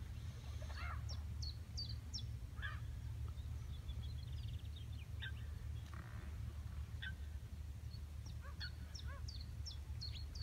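Wild birds calling over open water: runs of short, high chirps near the start and again near the end, with lower single calls in between, over a steady low rumble.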